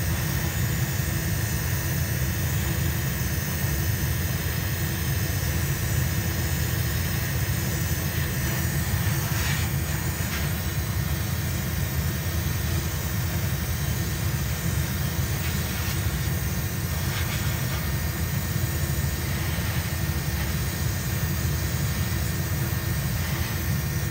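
Gravity-feed airbrush spraying 2K clear coat onto a plastic model car body: a steady air hiss over a continuous low machine drone, with brief brighter spray passes about ten seconds in and again a little past halfway.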